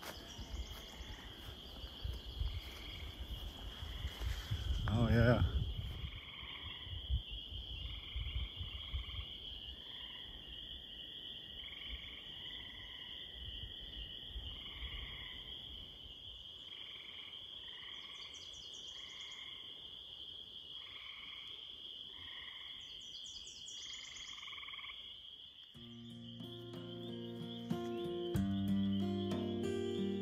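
Frogs calling in chorus from a marsh: a steady high-pitched trill with short calls repeating over it. Footsteps on the trail rumble underneath for the first few seconds, and guitar music fades in near the end.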